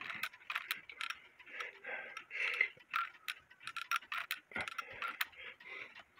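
Light, irregular metallic clicks and handling noise from an antique brass striking clock movement as its levers are handled.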